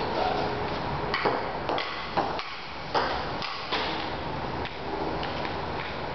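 Ping-pong ball being hit with a paddle and bouncing, a string of irregular sharp clicks with a short echo after each.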